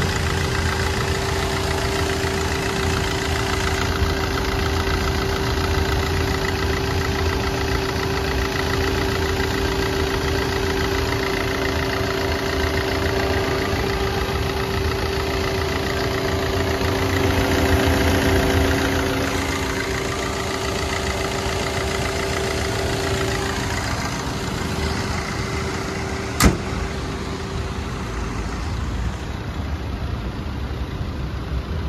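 Maruti Suzuki Ciaz's 1.3-litre DDiS four-cylinder turbo-diesel idling steadily, heard with the bonnet open. A single sharp knock about three-quarters of the way through.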